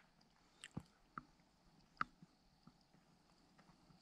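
Faint footsteps on the forest floor: a few short, sharp crunches of dry debris underfoot, the loudest about two seconds in.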